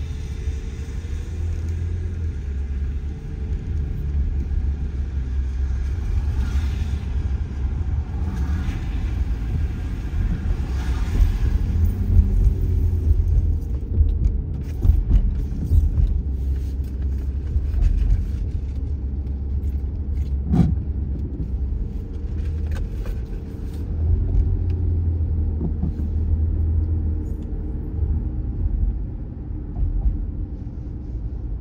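Car road noise heard from inside the cabin while driving on wet pavement: a steady low rumble of engine and tyres with a swell of tyre hiss now and then. A single sharp click about two-thirds of the way through.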